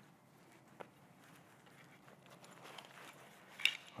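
Faint handling of a fabric backpack being opened: a small click about a second in, then soft rustling of the bag's material building up, ending in a sharper click near the end.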